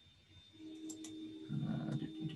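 A man humming a low wordless tune, starting softly about halfway in and growing louder near the end, with a couple of computer mouse clicks just before.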